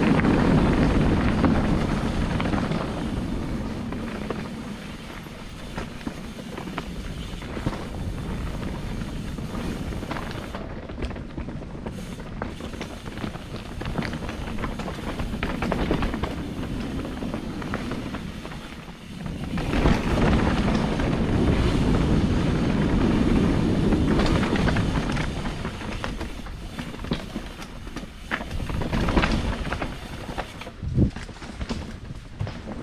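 Mountain bike riding a rough dirt and rock trail: wind rushing over the microphone with tyres rolling and the bike rattling and clattering over bumps. It is loudest at the start and again from about twenty seconds in, quieter in between.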